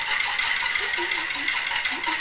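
Utensil briskly stirring a yogurt and sugar mixture in a bowl: a rapid run of small metallic clicks and scrapes over a steady hiss.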